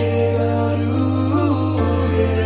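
Slow Nepali pop song: a deep held bass note under sustained chords, with a short sung phrase about halfway through; the bass moves to a new note near the end.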